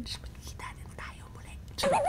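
A woman whispering a few words, with no voiced tone.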